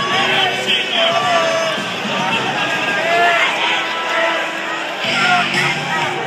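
Hockey arena din: many voices shouting over music from the arena's sound system, with a steady low tone coming in about five seconds in.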